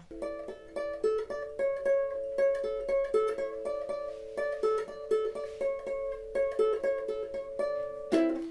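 Flight GUT 350 guitalele fingerpicked: a quick melody of single plucked notes, about five a second, repeating the same short figure over and over.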